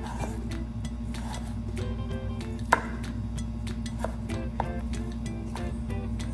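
A chef's knife slicing through a peeled raw potato and tapping the wooden cutting board: a scatter of light clicks, with one sharper knock a little before halfway. Steady background music plays throughout.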